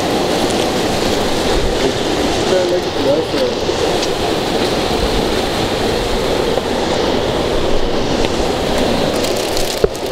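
Steady rushing of a rocky creek's water, with faint voices a few seconds in.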